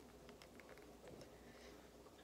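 Near silence: room tone with a few faint ticks, the small plastic sounds of fingers squeezing a bottle of super glue gel.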